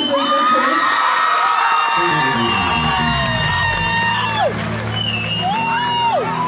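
Live band music with a crowd cheering, and long high held vocal cries that slide down in pitch near the end. A low bass line comes in about two seconds in.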